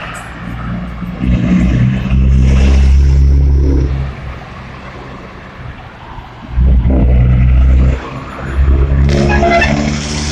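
Cars driving past one after another on a street: engine and tyre noise swells and fades as each vehicle passes. The loudest passes come about one to four seconds in and again near seven seconds, and another vehicle approaches near the end.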